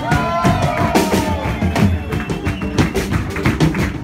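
Live band playing: a drum kit keeps up steady hits under a melodic line that slides down in pitch at the start.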